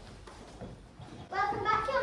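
A child's voice speaking lines on stage, starting about a second and a half in after a quieter stretch.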